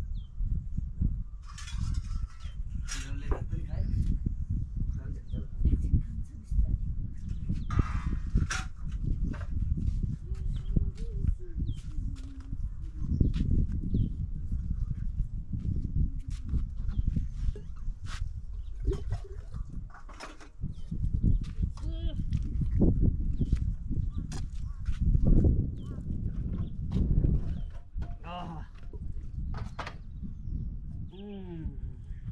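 People's voices over a steady low rumble, with scattered knocks and clicks.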